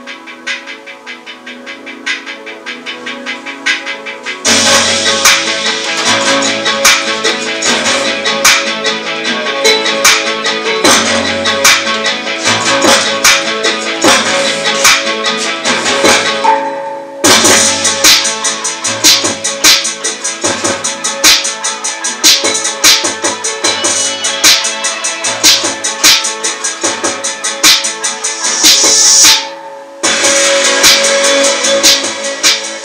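Guitar-led instrumental music played loud through a pair of homemade distributed-mode loudspeaker panels: rigid foam insulation boards, each driven by a 32 mm Dayton Audio DAEX32EP exciter. The music gets much louder and fuller about four seconds in, dips briefly around the middle and breaks off for a moment just before the end.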